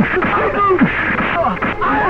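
Several men shouting and yelling over one another in a scuffle, their cries rising and falling sharply in pitch.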